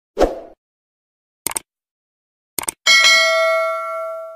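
Outro sound effects: a short burst, then two quick clicks, then a bright bell ding about three seconds in that rings on and slowly fades.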